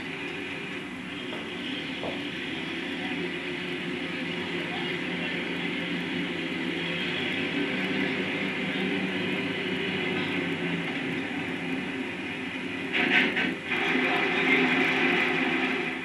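Steady mechanical running of a heavy engine, swelling slightly in level, with a few sharper clanking noises about three seconds before the end.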